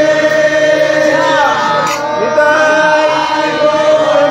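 Harmonium playing steady held reed chords under a group of voices chanting in devotional kirtan.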